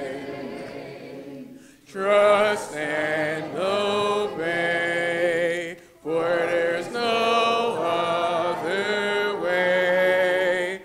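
Congregation singing a hymn a cappella, with no instruments, in long held phrases with short breaks for breath about two seconds in and again about six seconds in.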